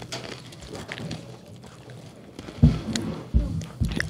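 Belvita Crunchy breakfast biscuit being bitten and chewed close to a microphone: quiet chewing at first, then a few short, sharp crunches near the end.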